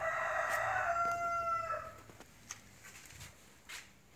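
A single long animal call, held at a steady pitch for about two seconds and dipping slightly as it ends, followed by a few faint clicks.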